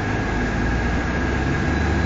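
Trolley's engine running, heard from inside the cabin: a steady low rumble under a thin, steady high whine, with the engine note shifting lower near the end.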